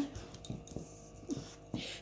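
A dog close to the microphone making a few short, breathy sounds, about half a second in and again around a second and a half in.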